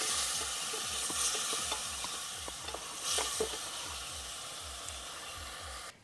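Sliced red onions sizzling as they fry in oil in an aluminium pot, stirred with a wooden spatula. The sizzle is steady, with a couple of louder stirring strokes about one and three seconds in.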